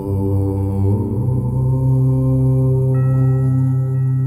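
A low, sustained 'Om' chant held on one pitch, with singing-bowl tones ringing over it; a new, higher bowl tone comes in about three seconds in.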